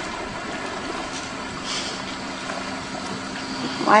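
Steady background ambience of a film dialogue track: an even hiss with a faint low hum, no speech.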